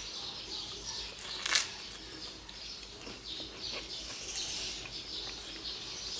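Small birds chirping repeatedly in the background, high and short, with one short sharp clink about one and a half seconds in.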